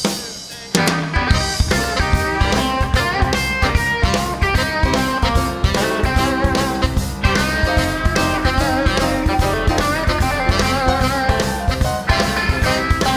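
A live blues-rock band kicks into a song's instrumental intro about a second in, right after a count-in. Drums keep a steady beat under an electric guitar.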